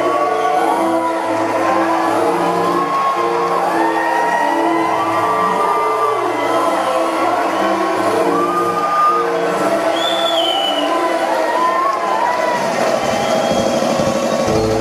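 A girl singing into a handheld microphone over music, holding long notes that glide up and down.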